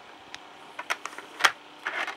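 A few light clicks and taps of small plastic 00 gauge model wagons being handled and set down on a wooden table top, the sharpest about one and a half seconds in.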